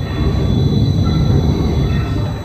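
Cross compound mill steam engine running, its valve gear, governor and gearing making a loud, continuous low rumble and clatter, with a faint steady high whine over it.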